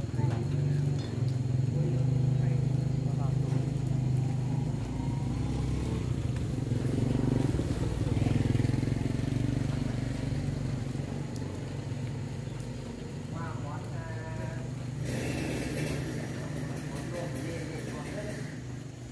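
A motorcycle engine running with a steady low drone, louder over the first ten seconds and easing off after that. A brief crinkling of a plastic bag at about fifteen seconds in.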